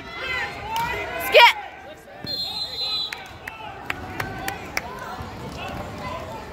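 Shouting voices in a gym, with a loud yell about a second and a half in. About a second later a referee's whistle blows for just under a second, and sharp knocks and squeaks from the gym floor are scattered throughout.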